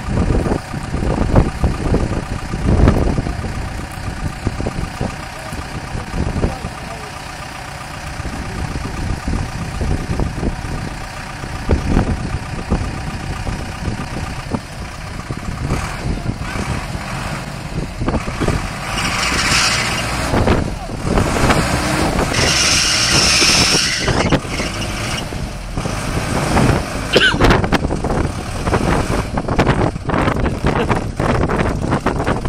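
Minibus engine running as the stuck bus tries to pull off a soft grass verge, with wind buffeting the microphone. From about 16 s in the noise grows louder and rushing in two surges, as the engine is worked harder to drive the bus out.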